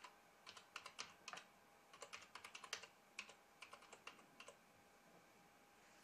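Faint keystrokes on a computer keyboard typing a line of text: about twenty clicks in quick, irregular runs, stopping after about four and a half seconds.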